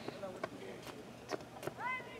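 Faint, high-pitched young voices calling out across an open football field, with one rising shout near the end and a few sharp clicks.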